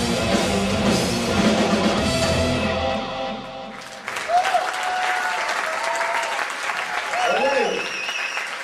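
Hard rock band playing live, electric guitar and drums, with the song ending about three to four seconds in. Audience applause follows, with a few shouts from the crowd.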